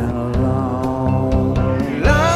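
A live band playing a slow instrumental passage: held tones over upright bass, with a few light hand-drum strokes.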